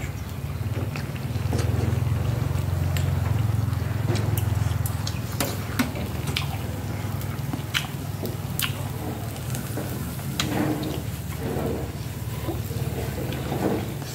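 Scattered light clicks of snail shells being handled and picked at over a grill, over a steady low rumble.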